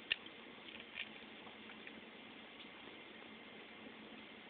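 Quiet room tone with a faint steady hiss, broken by a short click just after the start and a softer tick about a second in.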